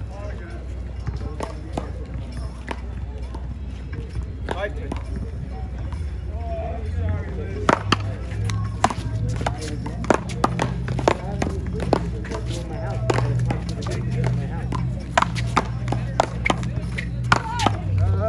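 One-wall paddleball rally: a rubber ball struck with paddles and rebounding off the wall, a run of sharp cracks roughly every half second to a second, starting about eight seconds in. A steady low hum and faint voices lie underneath.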